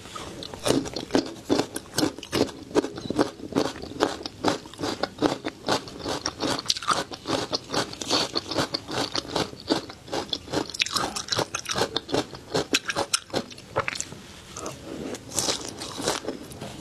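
Close-miked chewing of a mouthful of crispy flying fish roe: a dense, continuous run of sharp crunching and popping clicks.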